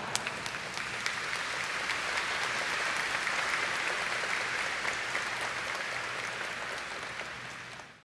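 Congregation applauding: dense clapping that swells a little through the middle and dies away at the very end.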